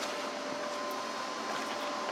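Steady background hum with two faint, even high tones running under it, like a fan or other running appliance in a room.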